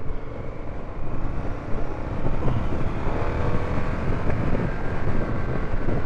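Indian FTR 1200's V-twin engine pulling hard under acceleration, its note rising and getting louder about a second in, with wind rushing over the microphone.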